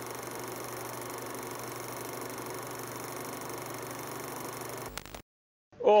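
Old-film-projector sound effect under a countdown leader: a steady hiss and low hum, with a couple of clicks just before it cuts off about five seconds in.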